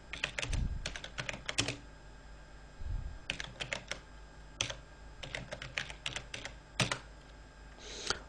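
Computer keyboard keys tapped in short bursts with pauses between, as a terminal command is typed out key by key.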